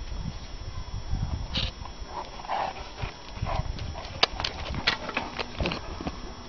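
Kangal shepherd dogs scuffling in rough play with a smaller dog, with short whining yelps in the middle and a quick run of sharp clicks and scuffs near the end.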